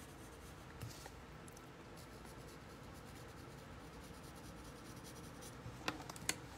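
Faint, soft scratching of a graphite pencil shading along the edges of a paper tile, with a few light clicks near the end.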